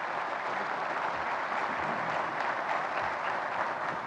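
Audience applauding: a steady, dense clapping.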